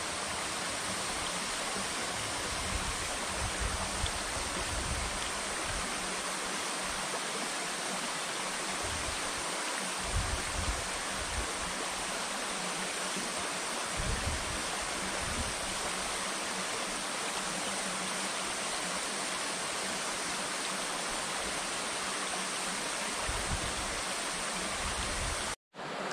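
Shallow river water rushing over stones: a steady, even rush with occasional low rumbles underneath. It breaks off for a moment just before the end.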